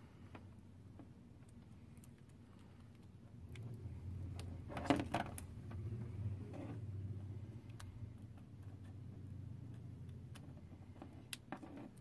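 Small clicks and taps as micro-USB 3.0 cable plugs are pushed into the ports of Samsung Galaxy S5 phones and the phones are handled on a tabletop, with a sharper knock about five seconds in, over a low hum.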